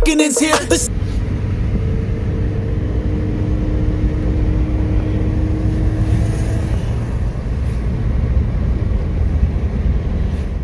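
Steady low road rumble heard inside a moving car's cabin, the tyres and engine of a car cruising on an open paved road, with a faint steady engine hum.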